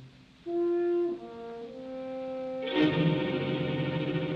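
Orchestral film score. After a brief hush come a few held notes, and a fuller ensemble with brass enters about three seconds in.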